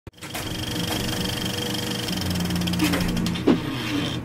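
A steady engine-like mechanical running sound with a low hum and rapid even pulsing, and one sudden loud hit about three and a half seconds in.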